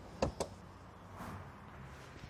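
Two sharp clicks in quick succession from a man handling things inside an open car door, as he searches the cabin for a lost key fob.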